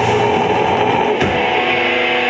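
Live metalcore band playing: electric guitars and drum kit at full volume, loud and steady throughout.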